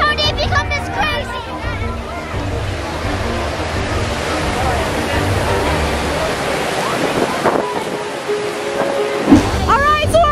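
Strong storm wind gusting through trees and buffeting the microphone with a rushing hiss and low rumble, with voices in the first second. Near the end the rumble drops away briefly and a few held musical notes come through.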